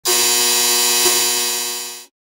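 A loud, steady electronic buzzing tone, rich in overtones, that fades over the last half second and then cuts off.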